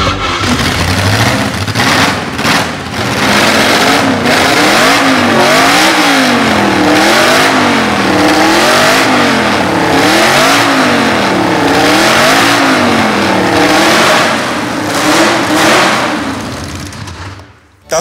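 Porsche 804 Formula 1 car's air-cooled 1.5-litre flat-eight blipped hard over and over, the revs rising and falling about once a second. It is extremely loud, metered at 137.8 dB, and dies away and cuts off near the end.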